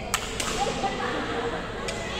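Badminton racket striking a shuttlecock during a rally, giving a sharp crack just after the start and another near the end.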